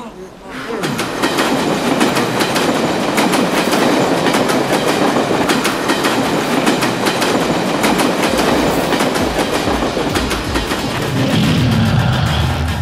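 Film soundtrack: a loud, dense wash of noise with a rapid clattering beat, starting about a second in. A low rumble comes in near the end.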